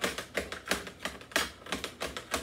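A kitchen knife chopping fresh parsley on a cutting mat over the counter: quick, slightly uneven knocks of the blade on the board, about three a second.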